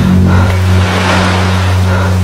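Rushing noise of a rough sea, with a steady low droning hum beneath it.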